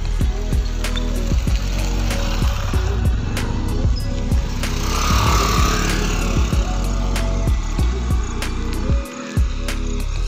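Background music with a steady beat. About halfway through, a brief rushing noise rises and fades under it.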